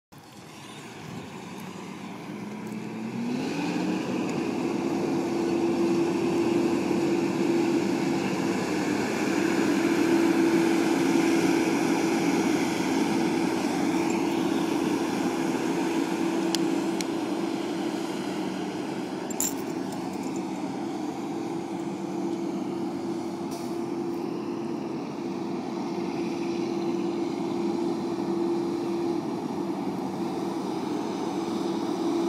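Semi-truck diesel engine revving up over the first few seconds, then running steadily at a constant pitch as the truck drives across the lot.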